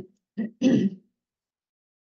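A woman clearing her throat: a short catch, then a longer rasp about half a second in.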